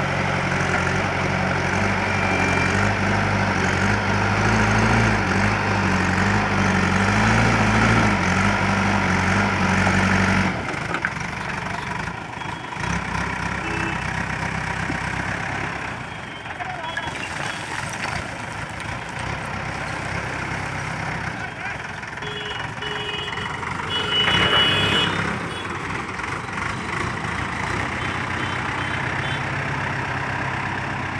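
JCB backhoe loader's diesel engine working hard for about the first ten seconds as the front bucket scoops rubble, its pitch wavering under load, then dropping to a lower, quieter run while the raised, loaded bucket is carried.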